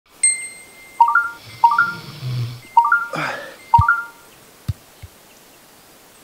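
Short electronic intro jingle: a bright sustained ding, then four quick rising three-note chimes, with a whoosh about three seconds in and a few low thumps.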